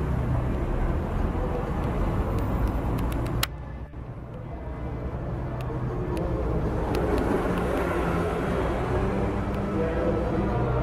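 Street traffic noise: a steady rumble of passing cars with faint indistinct voices. It drops away suddenly about three and a half seconds in, then builds back up.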